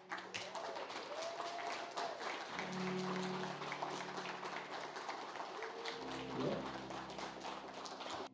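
An audience applauding, many hands clapping at once, with a few soft held music tones underneath. The applause cuts off suddenly near the end.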